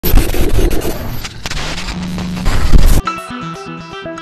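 Horror trailer score: a loud, dense rumbling noise for about three seconds cuts off suddenly, and a quiet melody of separate plucked or keyboard notes begins.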